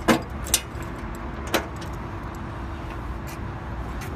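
Three sharp metallic clicks in the first second and a half as the sweeper side panel's tool-free screws are worked by hand, over a steady low machine hum.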